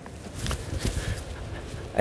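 Footsteps climbing a short flight of open stair treads, a few faint knocks over low background noise.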